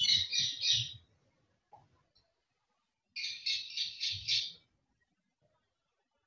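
A bird chirping in two short runs of rapid, high-pitched chirps: about three right at the start, and about five in a slightly longer run from about three seconds in.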